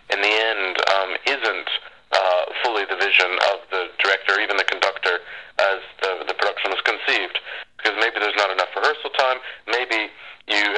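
Speech only: a voice talking continuously in short phrases, sounding thin and narrow like a phone line.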